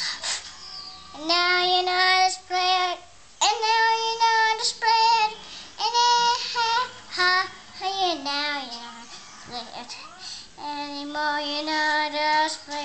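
A small child singing an improvised song, a run of held notes with short breaths between them, some notes wavering and one sliding down about eight seconds in.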